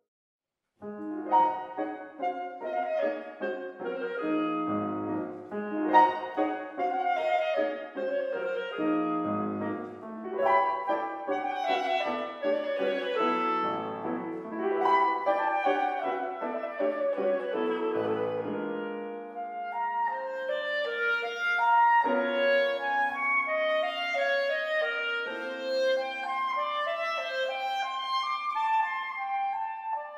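Clarinet and grand piano playing classical chamber music together, the music starting about a second in after a brief silence. Dense, quick-moving notes fill the first part; longer held notes come forward in the second half.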